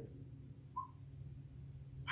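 Quiet room tone with a steady low hum, broken once, a little under a second in, by a brief faint high chirp.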